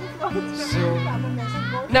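Amplified acoustic guitar ringing out chords in a break between sung lines, with voices heard over it.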